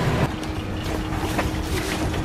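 Wind rumbling on the microphone, with a faint steady low hum under it.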